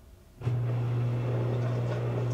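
Electrolux EFLS527UIW front-load washer switching on a steady electric hum with water rushing through it, starting suddenly about half a second in.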